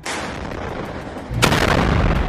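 Rocket fire: a sudden loud blast right at the start and a louder one about a second and a half in, each trailing off in a long rushing noise.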